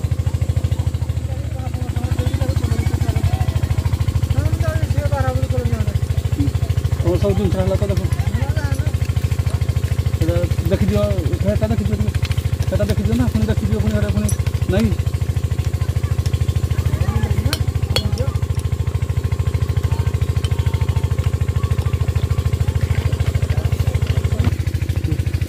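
An engine running steadily with a fast, even low thudding, under background voices. A few sharp metal clicks come in the second half.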